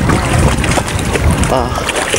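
Wind buffeting the microphone over open water, a steady low rumble, with people talking in the background.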